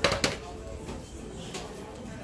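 A sharp clatter of hard objects, two quick knocks right at the start, then a steady background murmur with faint distant voices.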